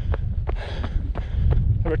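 Wind buffeting a GoPro action camera's microphone with an uneven low rumble, over the regular footfalls of a runner on a gravel track, about three a second.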